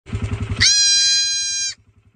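Goat kid bleating: a short wavering low call, then a long high-pitched call held steady for about a second before it breaks off.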